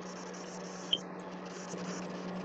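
Quiet background of a video call: a steady low hum with faint hiss, and one short sharp click about a second in.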